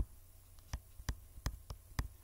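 A digital pen tapping and clicking on its writing surface while a line is drawn and letters are written: about half a dozen short, sharp taps, over a low steady electrical hum.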